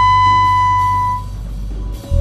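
Free-jazz improvisation: a tenor saxophone holds one high note over a sustained low bass drone. The saxophone note stops a little past halfway, and the bass drone carries on more quietly.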